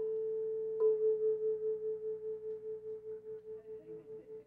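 Two nearly matched tuning forks on wooden resonator boxes, the first struck at the start and the second under a second later, ringing together as one steady tone that swells and fades about four times a second. These are beats: small weights on one fork's prongs put it slightly off the other's pitch. The ringing slowly dies away.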